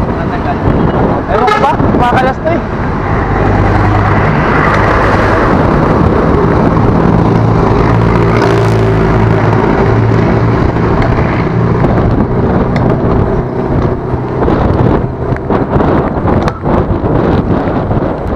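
Rushing wind on a bicycle-mounted camera riding at speed among road traffic. A motor vehicle's engine hums steadily from about three seconds in until about twelve seconds in.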